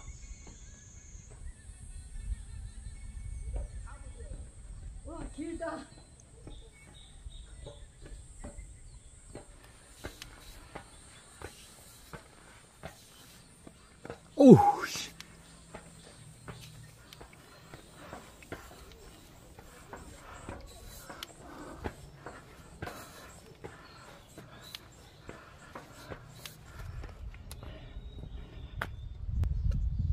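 Footsteps climbing a steep steel-grate stairway: light knocks and clanks coming steadily, about every half second in the second half, over a steady high insect drone. About halfway through comes one loud short call that slides sharply down in pitch.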